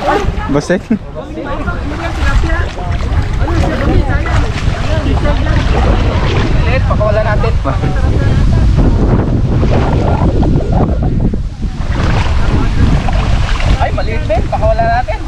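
Water sloshing and splashing around legs wading through shallow muddy water, under steady wind buffeting on the microphone, with voices in the background.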